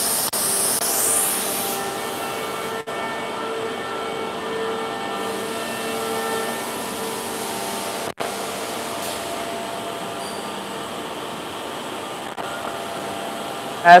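Edge banding line running: a steady machine hum with several constant tones and a high hiss over it during the first two seconds.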